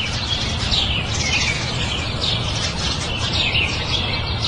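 Birds chirping: many short, falling chirps over a steady low background rumble, a birdsong ambience for an outdoor scene.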